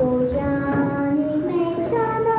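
A young girl singing, holding long notes that step up in pitch from one to the next.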